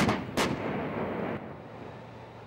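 Two sharp gunshot sound effects, the second about half a second after the first, followed by a fading rumble, as part of a war-themed title sequence.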